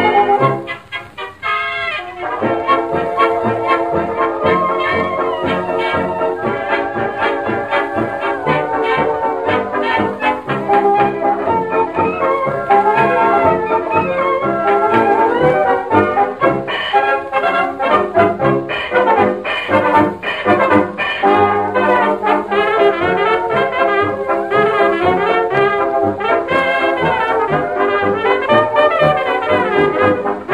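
1920s dance orchestra playing an instrumental chorus, brass-led over a steady dance beat, with a brief break about a second in. It has the thin, muffled sound of a 1925 78 rpm record.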